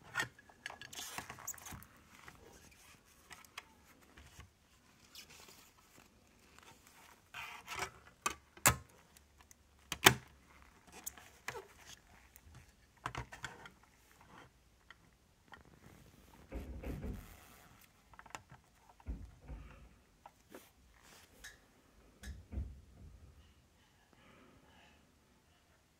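Handling noise of a plastic portable CD player in gloved hands: scattered light plastic clicks, knocks and glove rustling, the sharpest click about ten seconds in, with a few dull thumps in the last several seconds as it is set back on its stand.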